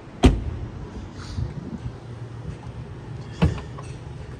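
Two sharp knocks, a loud one just after the start and a slightly softer one near the end, over a low steady rumble.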